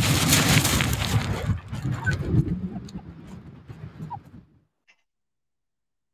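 Footsteps of several people crunching on shingle, with wind buffeting the microphone, fading as the walkers move away; the sound then cuts off to silence about three-quarters of the way through.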